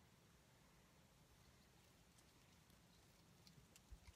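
Near silence: faint room tone inside a car cabin.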